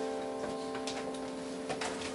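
A final piano chord on a digital stage piano rings on and slowly fades, with a few faint ticks over it.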